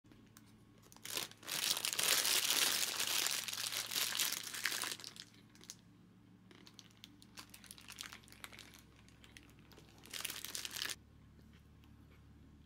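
Paper wrapper of a McDonald's Samurai Mac burger crinkling as it is unwrapped. It is loudest in a long stretch of crackling from about a second and a half to five seconds in, with softer rustles after that and another short burst near the end.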